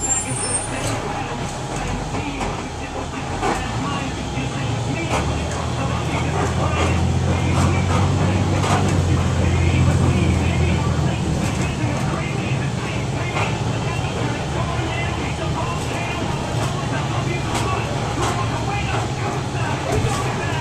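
Cabin sound of a 2003 IC RE rear-engine school bus's diesel engine running as the bus rolls through the yard, growing louder for several seconds in the middle, with frequent rattles and clicks from the bus body.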